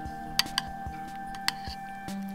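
Background music with long held notes, over which a metal spoon clicks sharply against a bowl a few times as chopped pineapple is stirred, the loudest clicks about half a second in and again near a second and a half in.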